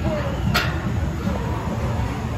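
Faint background chatter over a steady low rumble, with one sharp click about half a second in.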